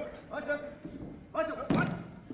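A heavy thud on a wrestling ring's canvas near the end, with voices around it.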